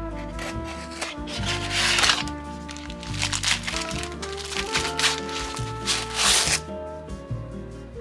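Background music with plastic packaging crinkling in a few bursts as a wrapped item is unwrapped.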